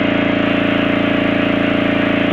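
Loud, steady distorted electronic drone: a buzzing stack of tones under hiss, fluttering rapidly and evenly in level, a glitch sound effect.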